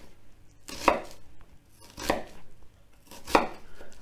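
Chef's knife slicing down through a halved onion and knocking on a wooden chopping board: three distinct knocks roughly a second apart, with a few fainter ones between.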